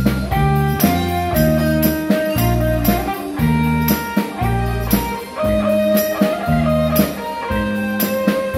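Live band playing an instrumental break in a song: a drum kit keeping a steady beat under a bass line and a plucked, guitar-like melody.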